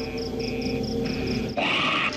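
Horror film trailer soundtrack: a held low chord with a high trill pulsing about four times a second. About one and a half seconds in it is cut off by a sudden, loud shriek.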